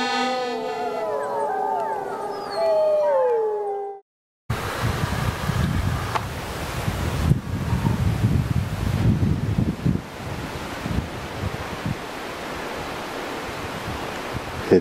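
Several overlapping wolf howls, gliding and falling in pitch, over the fading last notes of accordion music, cut off abruptly about four seconds in. After a short gap, wind buffets the microphone with an uneven low rumble.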